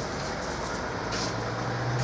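Steady outdoor background noise: a low hum under a hiss, with a brief louder hiss a little over a second in.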